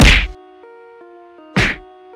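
Two heavy whack-like hits from a staged fight, about a second and a half apart, the first the louder, over light background music of held mallet-like notes.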